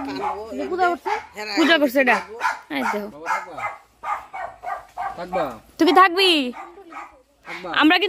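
Several people talking and calling out in raised, fairly high-pitched voices, with short pauses between phrases and no clear words.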